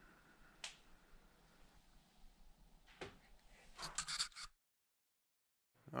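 A few faint taps on the Mercedes Sprinter van's sheet-metal wall panels, which are partly covered with stick-on foil sound-deadening mat, showing how the mat damps the metal. The taps are sparse, with a short cluster near the middle, and the sound then cuts out completely for over a second.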